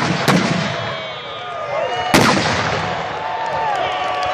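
Fireworks going off: a sharp bang just after the start and one big bang about two seconds in, each followed by a rumbling tail. After the big bang the crowd's voices rise in gliding whoops.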